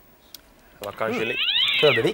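A person's voice making one drawn-out, wordless vocal sound that starts about a second in, glides up in pitch and then falls again.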